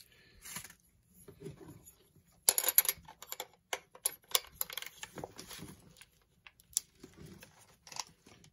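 Metal M42-to-Canon EF lens adapter being handled and fitted onto a Canon EOS camera's lens mount: a run of small clicks and short scrapes of metal and plastic, densest about two and a half seconds in.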